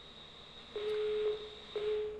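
Telephone busy tone coming over the studio's phone line: two beeps of one steady tone, each about half a second long, the second starting a second after the first. It is the sign that the caller has hung up.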